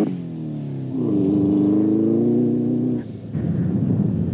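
Off-road racing truggy's engine at high revs: the pitch falls right at the start as it shifts, then climbs again and holds high. About three seconds in, it gives way to the rougher, lower engine rumble of a racing pickup truck.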